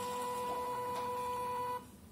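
Small electric motor pulling the bead chain of motorised Venetian blinds, tilting the slats open: a steady whine that cuts off suddenly near the end.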